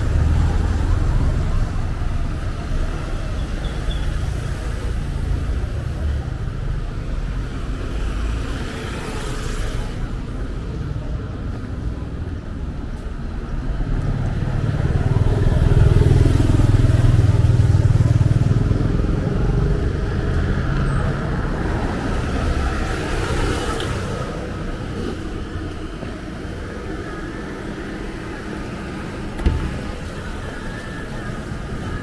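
Town street traffic: cars and motorcycles running past, with a motorcycle going by close about halfway through, the loudest part. A single sharp knock near the end.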